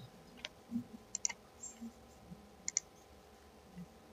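Faint computer mouse clicks: a single click, then two quick double clicks a second and a half apart, as folders are opened in a file browser.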